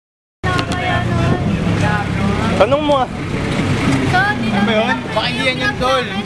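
Begins with a short dead silence, then people's voices talk and exclaim over a steady low engine and traffic hum from the street.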